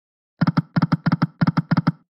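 Ticking sound effect of an EGT 'Shining Crown' online slot's reels spinning: short electronic clicks in pairs, about three pairs a second, starting about half a second in.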